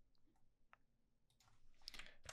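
Near silence with a few faint, sharp clicks of a computer mouse.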